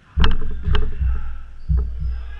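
A run of heavy, deep thumps and knocks right at the microphone, about four in two seconds, the first two with sharp clicks.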